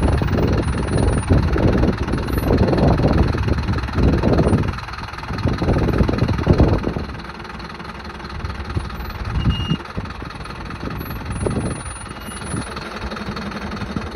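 Mercedes Vario 818 truck's four-cylinder diesel engine running at low revs as it crawls down a steep, tilted bank, louder in the first half and quieter after about seven seconds.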